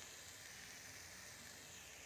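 Faint, steady sizzle of spiced onion-tomato masala frying with a melting spoonful of butter in a kadhai.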